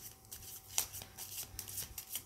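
A deck of tarot cards shuffled by hand: a quick, uneven run of card flicks and riffles, the loudest a little under a second in.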